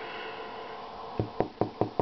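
About five quick knocks or taps in under a second, starting a little past the middle, over a steady background hum.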